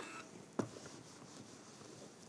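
Faint handling sounds as a quilt block's seam is pressed with a household iron on a pressing mat, with one short knock about half a second in.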